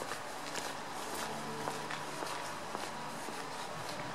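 Footsteps of the person filming, walking at an even pace of about two steps a second on a gritty tarmac yard.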